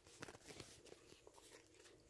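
Near silence: room tone with a few faint paper rustles from handling the pages of a spiral-bound service manual.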